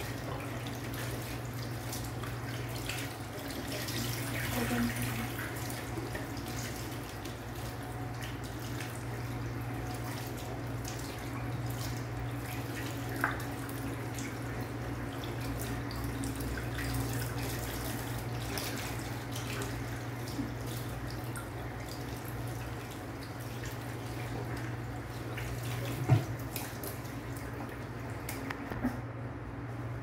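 Water from a sink tap running and splashing over a small wet dog being rinsed in a bathroom sink, with a couple of brief knocks along the way. The running water stops about a second before the end.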